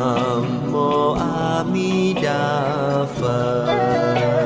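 Buddhist devotional chant set to music: a voice sings held, slightly wavering notes in short phrases over instrumental accompaniment.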